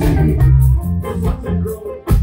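Live amplified band playing: electric guitars, bass and drums, with an organ sound from a stage keyboard. The music drops out briefly right at the end.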